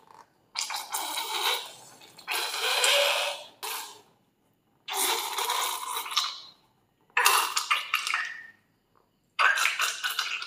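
Slime squeezed out through the snipped tip of a slime-filled rubber balloon, coming out in about five noisy bursts of a second or so each, with short silent gaps between them.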